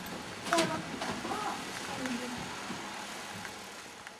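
Faint, indistinct voices over a steady hiss, with a sharp knock about half a second in.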